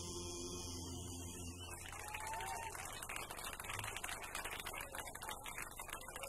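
The held final chord of a live song, which breaks off about two seconds in, followed by an audience applauding.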